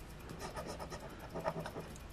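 Faint rasping of a plastic scratcher token scraping the coating off a scratch-off lottery ticket, in short uneven strokes.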